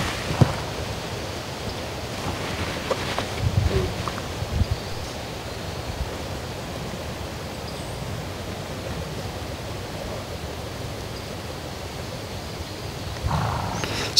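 Steady rushing wind noise outdoors, with a few soft thumps and rustles in the first five seconds.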